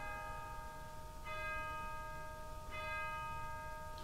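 Bell tones struck three times, about one and a half seconds apart, each ringing on steadily beneath the next.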